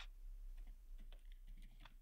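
Faint typing on a computer keyboard: a few scattered, irregular keystrokes.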